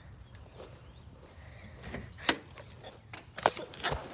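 Handling noise from a moving phone microphone, with a single sharp click about halfway through and a few clicks and knocks near the end.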